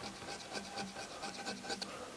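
Hand-held carving gouge, a number five sweep, scraping and cutting a quick run of short strokes into dry wood, several a second: fine hair texture being carved into a wood sculpture.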